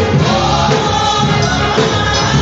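Gospel choir singing with instrumental accompaniment and held low bass notes.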